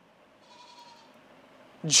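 A pause in a man's speech, filled only by a faint steady hiss of room tone. His voice resumes near the end.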